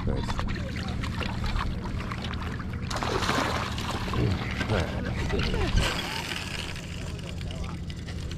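A hooked salmon splashing at the water's surface as it is drawn in and scooped into a landing net, with water sloshing. The splashing is loudest about three seconds in.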